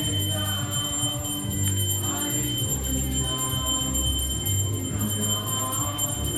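Kirtan: devotional group singing over a steady jingling of hand cymbals (karatalas).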